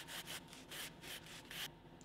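Canvas cloth rubbed quickly up and down the beeswaxed edge of a vegetable-tanned leather belt strap, buffing the burnished edge to a shine. The strokes are faint and quick, several a second, and stop just before the end.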